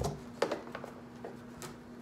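A few light knocks and rustles of a boxed product being lifted out of a cardboard shipping box, the loudest about half a second in.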